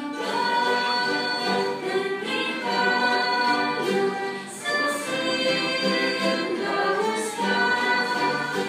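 A hymn sung by many voices together, accompanied by a string orchestra of violins, in sustained phrases with a short breath between them about halfway through.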